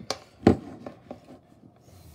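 Plastic battery charger being handled and set down into place: two sharp knocks about half a second apart, then a few lighter taps and some rubbing of cables.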